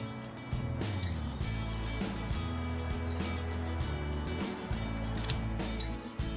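Background music with sustained low notes that shift every second or so, with a few faint short clicks over it.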